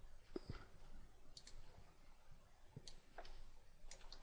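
Faint, scattered clicks of a computer keyboard and mouse, about half a dozen sharp ticks spread across a very quiet room.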